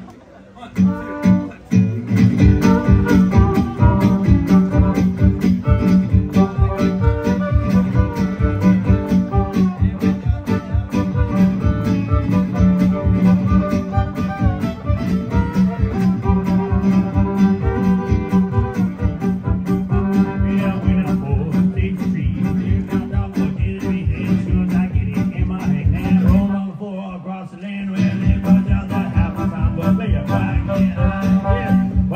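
Live fiddle and guitar music: a bowed fiddle over a strummed guitar with a fast, steady beat. The low beat drops out for about a second and a half near the end, then comes back in.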